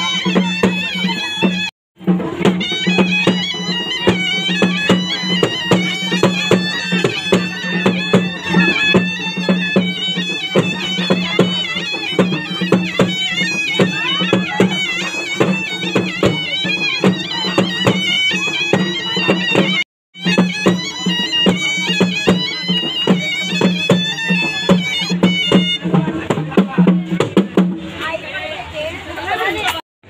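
Loud folk procession music: a shrill, wavering reed-pipe melody over a steady drone, with fast drum strokes. It is broken by two brief silent gaps, about two seconds in and about twenty seconds in.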